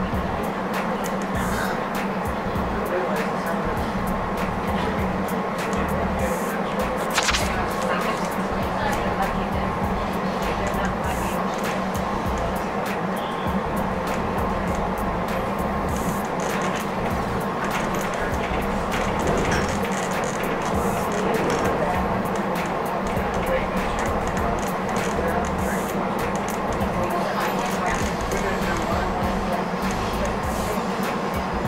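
Inside a Hyundai Rotem Silverliner V electric commuter rail car running at speed: a steady rumble with a constant hum and scattered light clicks, and one sharper click about seven seconds in.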